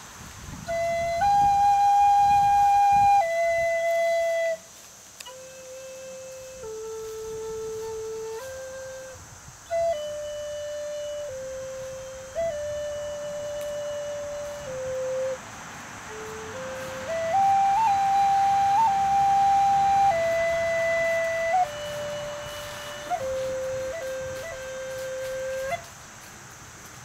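Wooden end-blown flute playing a slow, simple melody of long held notes, some with quick grace-note flicks. It starts about a second in and stops just before the end.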